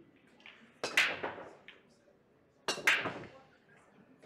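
Break shot in 10-ball pool: the cue strikes the cue ball, which smashes into the racked balls about a second in with a loud crack. A second sharp clatter of balls colliding comes near three seconds in.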